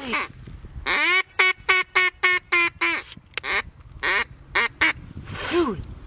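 Duck quacking: a quick run of about eight short quacks starting about a second in, then a few more scattered quacks.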